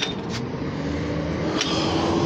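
Street traffic: a motor vehicle's engine approaching, its hum rising slowly in pitch and getting louder, over a steady rush of road noise.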